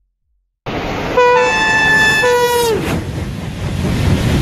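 A two-tone train horn sounds for about a second and a half over the rumbling noise of a train, its pitch sagging as it cuts off. The noise begins suddenly under a second in, after a moment of silence, and runs on after the horn stops.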